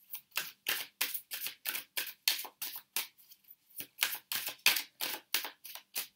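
A tarot deck being shuffled by hand: a quick, even run of crisp card strokes, about four a second.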